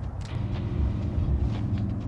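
A steady low mechanical hum, one even tone with its overtones, setting in just after the start and holding level.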